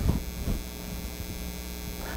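Steady electrical mains hum in the sound system or recording, with two faint short sounds near the start, about half a second apart.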